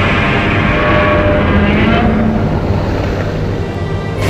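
A loud, steady, engine-like rumble with a few faint steady tones over it, its upper part thinning out about halfway through.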